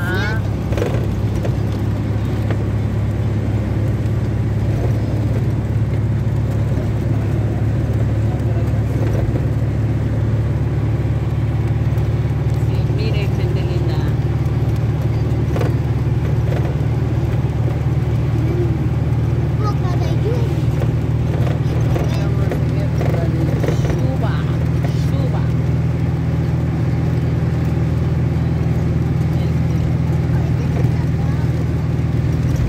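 A small motorhome's engine running at a steady cruise, heard from inside the cab, with a steady hum under even road and rain noise.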